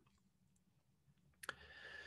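A single computer mouse click about one and a half seconds in, out of near silence, followed by a faint hiss.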